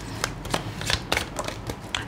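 Tarot cards being shuffled and handled: an irregular run of short card flicks and snaps.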